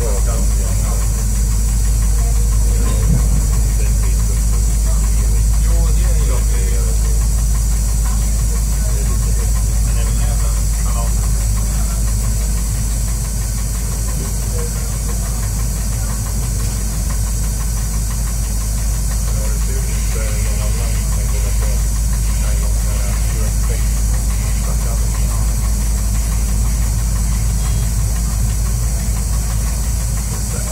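Y1-class diesel railcar under way, heard from inside its front end: a steady low engine and running rumble with a constant hiss.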